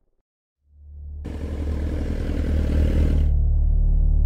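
A motorcycle engine running as the bike rides toward the camera, heard for about two seconds, over a deep low rumble that swells up out of silence and carries on.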